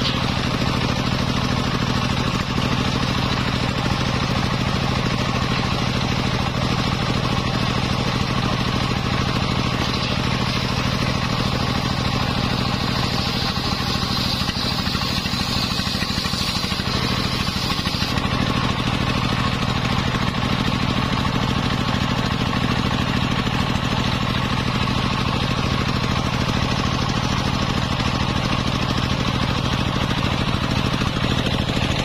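Homemade engine-driven circular saw bench ripping jowar wood boards into planks: a steady engine drone under the blade cutting through the wood. A higher blade whine runs through the middle and drops away about two-thirds of the way in.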